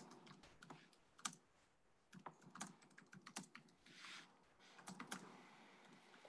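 Faint typing on a computer keyboard: scattered, irregular key clicks and taps.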